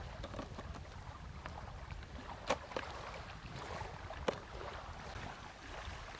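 Metal-cage fishing feeders clicking against each other and the plastic tub as they are handled: a few sharp clicks, the loudest about two and a half seconds in and just after four seconds, over a low steady wind rumble.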